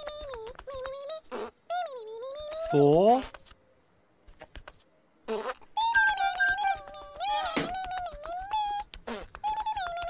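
High-pitched, squeaky, wordless chatter of the Pontipine puppet characters, with quick light ticks between the calls. A louder, lower swooping call comes about three seconds in, followed by a pause of about two seconds before the chatter resumes.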